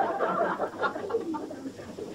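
Audience laughing, the laughter dying away.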